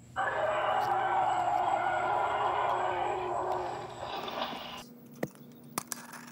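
A person's voice doing a long, loud, growling dinosaur roar, held for about four and a half seconds and tailing off, followed by a few light clicks and taps near the end.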